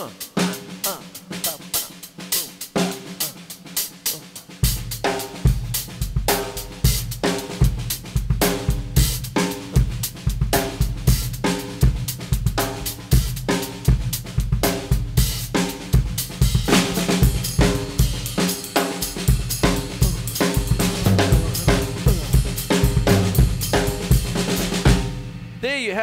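Drum kit played live: a funky groove built on a 3-2 clave, right hand on the hi-hat with the snare. The bass drum comes in about four to five seconds in, and the playing stops just before the end.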